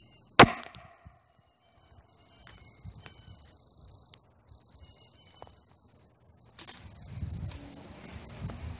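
A homemade gun-cotton (nitrocellulose) powered PVC rocket launcher firing a cardboard-tube rocket: one sharp bang about half a second in, with a brief trailing whoosh. After it, a high steady insect call stops and starts.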